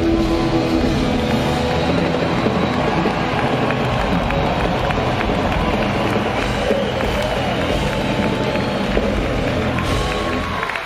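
Live rock band with guitars, bass and drums playing a loud, drawn-out finish to a song, the drums and cymbals crashing in one continuous wash, while the concert crowd cheers.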